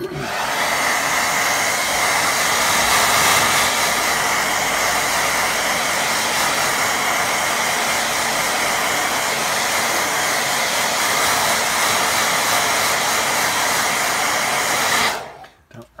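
Hair dryer running steadily to dry wet watercolour paint, switched off about a second before the end.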